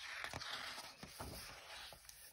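A page of a hardcover picture book being turned by hand: a paper swish and rustle with a few small crackles, lasting about two seconds.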